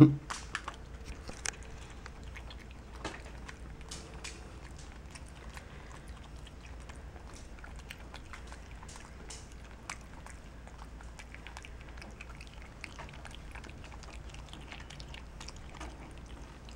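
Black-capped capuchin monkey chewing gummy bears close to the microphone: small faint clicks and smacks scattered throughout. A brief loud sound comes right at the start.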